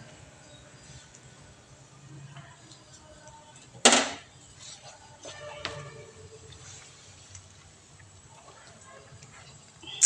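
Faint steady hiss of stovetop cooking, broken once about four seconds in by a single sharp knock of a utensil against the batter bowl.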